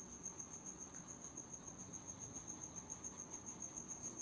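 Faint, steady high-pitched pulsing tone, about ten quick pulses a second, over a low background hiss.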